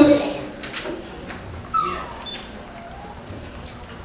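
A quiet lull in a hall full of children, with faint audience murmur and a short falling high-pitched call about a second and a half in.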